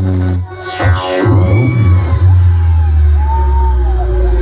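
Loud electronic dance music with heavy bass played through a DJ truck's sound system. About half a second in the beat drops out briefly, a falling sweep leads back in, and a long sustained bass carries on with gliding tones over it.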